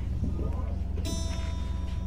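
A guitar string plucked about a second in and left ringing, as when an instrument is being tuned, over a steady low electrical hum.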